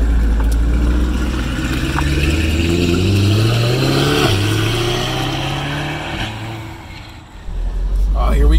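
Twin-turbo C8 Corvette's V8 pulling away and accelerating. The engine note climbs for about four seconds, drops sharply, then carries on and fades as the car moves off.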